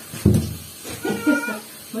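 Wet cat yowling in distress while held in a bathtub for a bath. A loud cry starts suddenly about a quarter second in, and a second, higher wavering meow follows about a second in.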